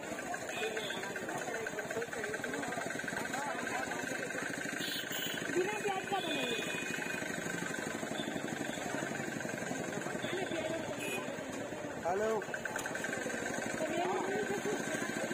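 Busy street-market background: several voices talking at once over a steady mechanical hum and hiss, with a brief louder burst about twelve seconds in.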